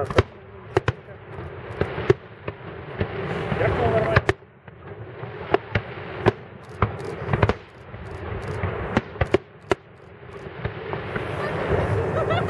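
Aerial fireworks shells bursting in a rapid, irregular series of sharp bangs, over a rising rush of noise that builds and cuts off twice.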